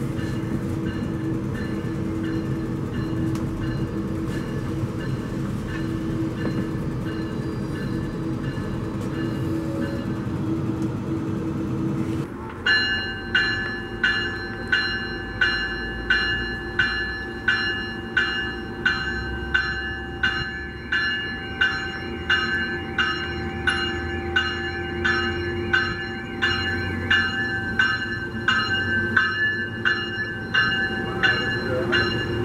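Steady rumble and hum of a Metrolink passenger coach running, heard from inside the car, for the first twelve seconds. Then an arriving Metrolink train's bell rings steadily, about one and a half strikes a second, over the low rumble of the train rolling past.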